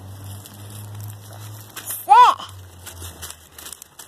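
A young child's short wordless vocal sound, its pitch rising then falling, about two seconds in. Under it are faint crinkling and rustling of dry woodchips and a low steady hum that dies away after about three seconds.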